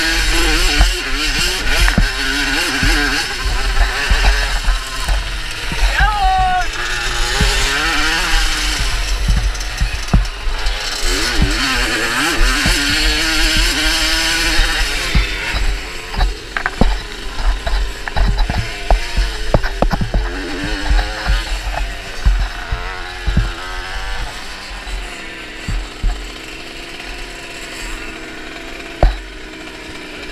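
Small two-stroke moped engine revving up and down while ridden over a bumpy dirt track, with wind buffeting and knocks on a helmet-mounted microphone. After about fifteen seconds the engine eases to lower revs and the sound drops as the moped slows down.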